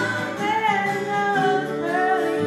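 Live gospel band singing in harmony, several voices together with vibrato, backed by strummed acoustic guitar and electric bass notes underneath.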